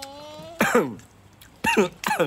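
A person's voice: a held, hummed note, then two loud, short vocal bursts about a second apart, each falling steeply in pitch, like a cough or throat-clear.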